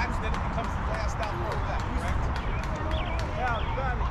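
Indistinct chatter of several overlapping voices, none clear enough to make out, over a steady low rumble.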